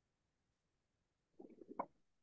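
Near silence on a video-call recording, with a brief faint voice-like sound near the end.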